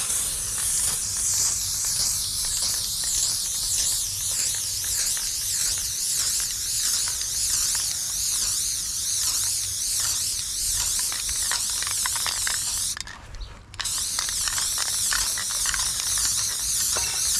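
Aerosol spray-paint can hissing in long continuous sprays against a metal wall, with one brief break about thirteen seconds in before it sprays again.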